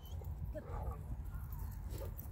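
Belgian Malinois puppy giving a short, wavering whine about half a second in, over a steady low rumble of wind on the microphone.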